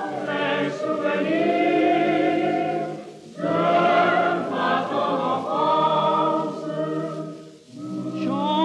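Male vocal ensemble and boys' choir singing a French chanson in close harmony on an early-1950s record. Two long sung phrases with a short break between them about three seconds in, and another break just before the end.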